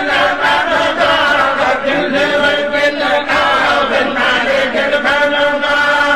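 Several voices chanting together in a continuous, melodic religious recitation.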